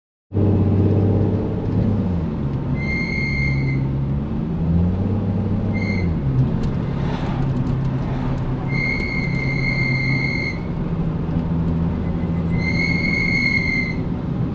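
Nissan 370Z's 3.7-litre VQ37 V6 with a full aftermarket exhaust, heard from inside the cabin while driving, its note rising and falling with the throttle. A high, steady whistling tone comes and goes four times over it, each lasting about one to two seconds.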